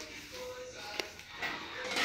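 Quiet handling sounds at a table as hands knead soft homemade playdough and fiddle with a small plastic sachet of gelatin powder, with one sharp click about halfway through.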